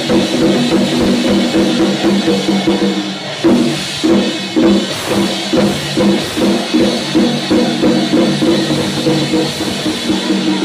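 Chinese temple percussion: a drum keeping a steady beat, with gongs and cymbals ringing over it.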